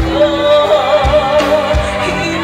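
A woman singing a pop song live into a microphone over backing music with a steady kick-drum beat; she holds a long note with a wavering vibrato through the middle.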